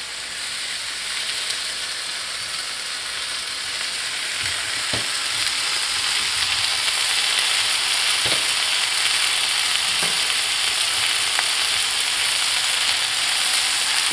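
Chicken pieces sizzling in hot oil in a nonstick frying pan with sautéed onion and tomato masala. It is a steady frying hiss that grows a little louder, with a few faint knocks against the pan.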